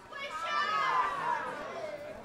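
An audience member's voice calling out from the crowd, faint and off-microphone, asking for a song.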